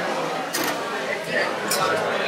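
Two short spray puffs from a small atomizer misting bay leaf essence over a cocktail, one about half a second in and one near the end, over steady bar chatter.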